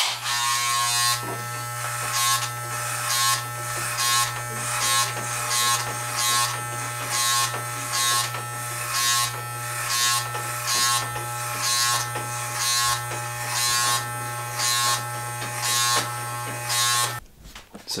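Corded electric hair clippers running with a steady buzz, passed repeatedly through short hair at the back and side of the head, about two strokes a second. The clippers stop abruptly near the end.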